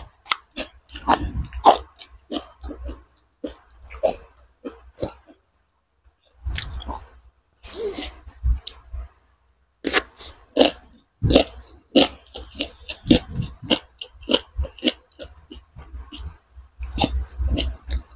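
Close-miked mouth sounds of eating by hand: irregular chewing with crisp crunches of fresh cucumber and rice with chicken curry. Short pauses fall about six and nine seconds in.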